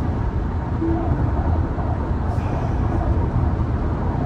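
Steady road and tyre noise inside a Tesla's cabin at freeway speed.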